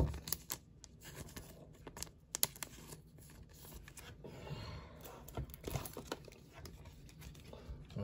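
Faint crinkling and rustling of a thin clear plastic card sleeve as a baseball card is slid into it, with a few light clicks of card and plastic being handled.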